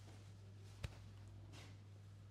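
Near silence: room tone with a steady low hum and a single sharp click near the middle.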